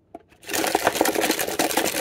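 Plastic wrappers of mini Kit Kat bars crinkling loudly as a hand stirs through a pile of them, a dense crackle starting about half a second in.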